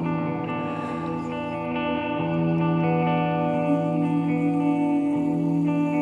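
Hollow-body electric guitar playing an instrumental passage of slow, held, ringing notes with echo. The notes change about two seconds in and again near five seconds.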